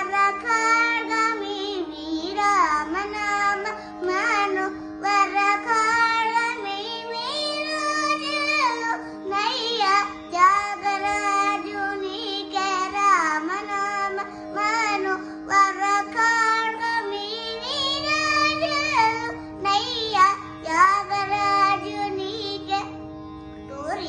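A young girl singing a Carnatic-style devotional song, her melody full of slides and ornaments, over a steady drone held underneath, with brief pauses for breath.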